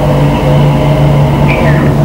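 Steady low electrical hum with a row of overtones and hiss beneath it: the background noise of an old videotape recording, nearly as loud as the voice.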